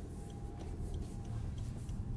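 Rolls-Royce Wraith cabin on the move: the twin-turbo V12 and road give only a low, very quiet hum. Over it a turn-signal indicator ticks faintly and evenly, about two or three ticks a second.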